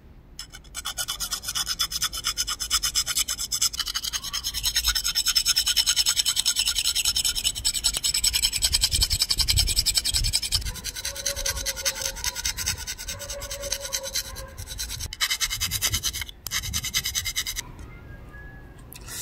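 A steel hand file rasping against the edge of an aluminium flat bar in quick, repeated short strokes, with brief pauses near the end. The strokes are rounding off and deburring the bar's sharp corners and hole edges.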